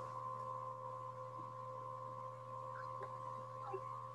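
Faint steady hum made of a few held tones, unchanging throughout, with no speech.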